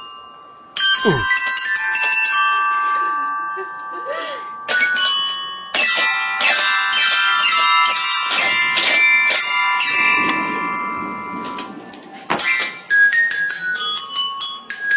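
Toy xylophone struck with mallets: bright, ringing metallic notes in fast, jumbled flurries starting about a second in, thinning out later and picking up again near the end.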